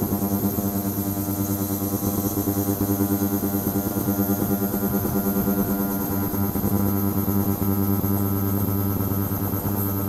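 Ultrasonic cleaning tank running: a steady buzzing hum with many overtones, its loudness pulsing several times a second, over a thin steady high whine.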